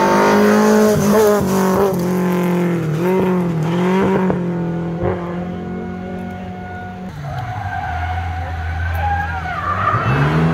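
Rally car engine revving hard, its note dipping several times in the first five seconds as the driver shifts or lifts. From about seven seconds in a lower, quieter, steady engine note takes over, and near the end an engine note rises again as the next car comes.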